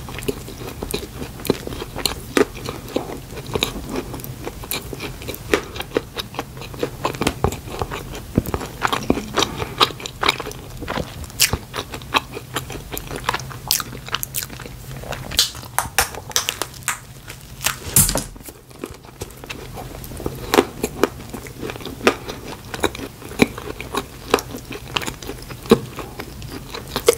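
Close-miked chewing of a soft Krispy Kreme donut with green icing and a cream topping: wet mouth sounds with many small, irregular clicks. One sharper click comes about two-thirds of the way through, followed by a short lull.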